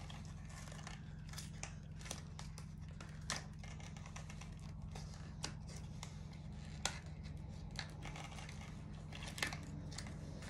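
Scissors snipping and picking at the sticky tape on a cardboard chocolate box: scattered small sharp clicks, a second or so apart, over a low steady hum.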